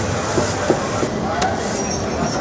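Outdoor location sound: a steady rushing noise with a few faint, indistinct voices in it.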